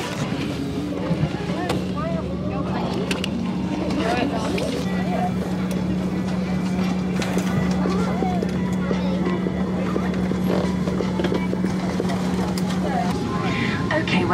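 Airliner cabin ambience at the gate: a steady ventilation drone with a low hum, under the faint chatter of passengers settling in. The hum cuts out near the end.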